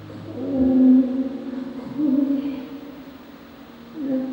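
A woman singing a slow, quiet ballad live into a microphone: two long, soft held notes, the second fading away near the end.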